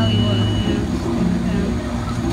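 A steady low mechanical hum from amusement-park machinery, with a thin high whine that stops about a second in, over indistinct voices.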